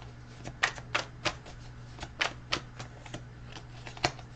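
A deck of message cards being shuffled by hand: a string of about a dozen sharp, irregular card clicks.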